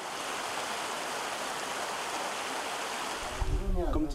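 Mountain stream running over rocks: a steady rushing of water. Near the end it gives way to a low rumble and a voice.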